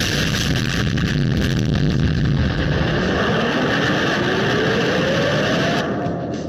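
Loud, continuous explosion noise that carries on without a break, with a whine rising steadily in pitch over its second half; it cuts off suddenly just before the end.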